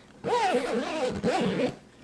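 Zipper of a backpack's large back pocket being drawn in one pull of about a second and a half, its buzz rising and falling in pitch as the pulling speed changes.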